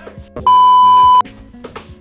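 A single loud, steady electronic bleep lasting under a second, the kind edited in to censor a word, over quiet background music.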